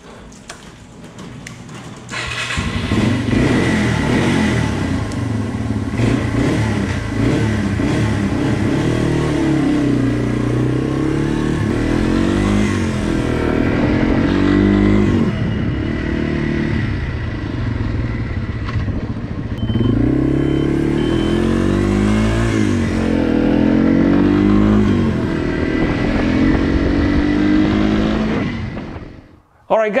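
Yamaha TW200's single-cylinder four-stroke engine under way, coming in about two seconds in. Its pitch repeatedly climbs as the bike accelerates and drops back at each gear change, then fades out just before the end.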